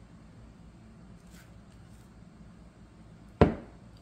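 A spatula knocking once, sharply, against a glass mixing bowl about three and a half seconds in, over a quiet room background.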